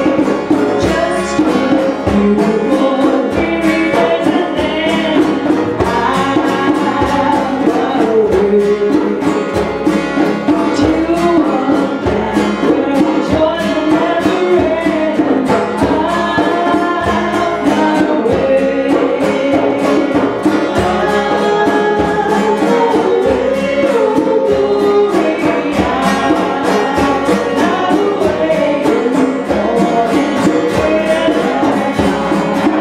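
A small acoustic group performing a traditional-style song: voices singing over a strummed acoustic guitar and a steady percussion beat.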